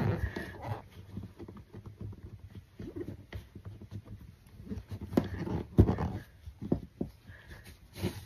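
Handling sounds of fitting wool fabric into a plastic embroidery hoop: the fabric rustles as it is smoothed flat, with irregular small clicks and knocks from the hoop and its tightening screw, a few sharper ones past the middle.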